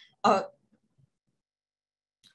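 A woman's voice giving one short, clipped vocal sound like a catch in the throat, then breaking off into dead silence for over a second.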